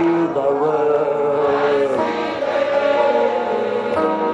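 A choir singing long held notes over music.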